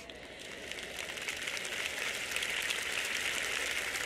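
Audience applause, many hands clapping at once, building over the first second or two and then holding steady.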